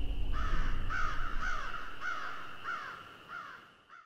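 A bird calling with harsh, repeated calls, about seven of them at roughly two a second, growing fainter toward the end and cut off as the audio ends.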